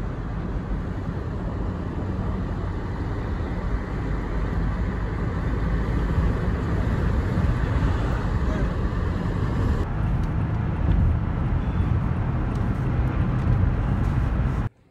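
Steady road noise from inside a moving car: a low rumble of tyres and engine with a hiss over it.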